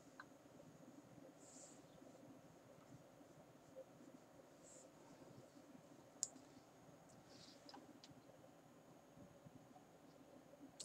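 Near silence: room tone, with a few faint clicks, the clearest about six seconds in.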